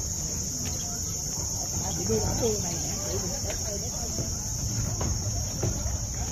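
Insects giving a steady high-pitched drone, with faint voices of people nearby around two to three seconds in.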